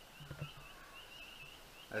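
A small bird chirping faintly in the background: a steady string of short, high chirps, a few each second. A soft knock comes about a third of a second in.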